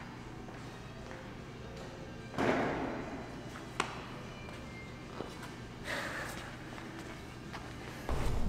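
Quiet background music, with a thud about two and a half seconds in as feet land on the floor after dropping from a pull-up bar. A sharp tap follows a little over a second later, and another softer thud comes near six seconds.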